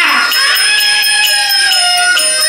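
Chinese shadow-play singing: the young female (xiaodan) role holds one high note that slides slowly downward over the traditional accompaniment.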